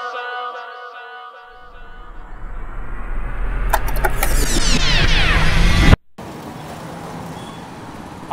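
The song's last synth chord rings on and fades out. A noisy, rumbling swell then builds for about four seconds, with high sweeps falling near its peak, and cuts off abruptly about six seconds in, leaving a steady, quieter hum of street traffic.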